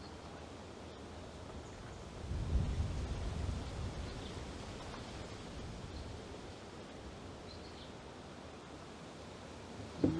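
Quiet outdoor ambience: a steady hiss with a low rumble starting about two seconds in and fading over the next couple of seconds, and a few faint, short high chirps.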